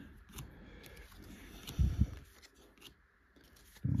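Baseball trading cards being thumbed one by one off a stack held in the hand: light slides and clicks of card stock, with two louder soft thumps about halfway through.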